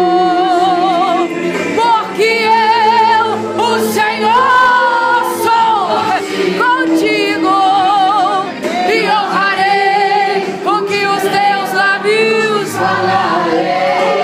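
A group of church singers, women's voices leading, singing a Portuguese gospel worship song through microphones and loudspeakers, with held notes and a marked wavering vibrato.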